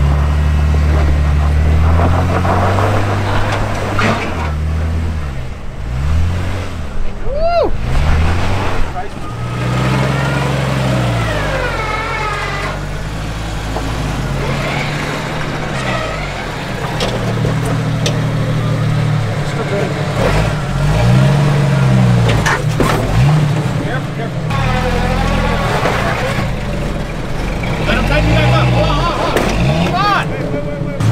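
Off-road 4x4 engines revving up and down over and over while crawling a rock trail, with indistinct voices of spotters in between.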